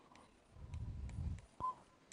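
Faint clicks and a low muffled rubbing from a pen writing on a whiteboard screen, then one short, high, steady beep about a second and a half in.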